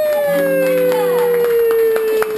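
Jazz band holding its final note, which slides slowly down in pitch, with a short chord underneath in the first half. The audience begins to clap, the claps growing more frequent toward the end.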